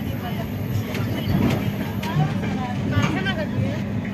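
Steady low rumble of a moving passenger train heard from inside the coach, with passengers talking over it.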